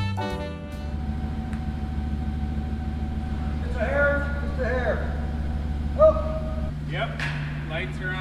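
A pickup truck engine idling, a steady low hum that shifts in tone near the end. Short bursts of men's voices come over it, the loudest about six seconds in, and a music track fades out in the first second.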